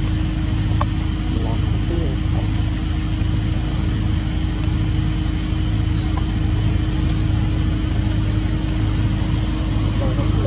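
A steady low rumble with a constant hum, like a motor running nearby, unchanging throughout.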